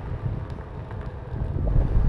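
Wind buffeting the microphone of a rider moving along a street: a low, noisy rumble that grows louder toward the end.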